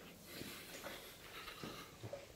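Quiet room tone, with a couple of faint soft knocks.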